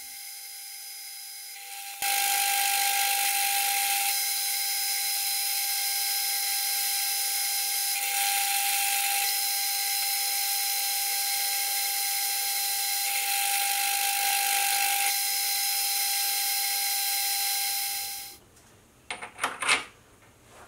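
Hafco metal lathe running with a steady whine while a boring bar counterbores a 1045 steel sleeve. The hiss of the cut starts suddenly about two seconds in, holds steady, and dies away near the end.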